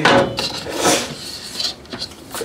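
Hard clatter of the RV range's glass cover being handled and closed down over the stove: a sharp knock at the start and another about a second in, with rubbing and handling noise between.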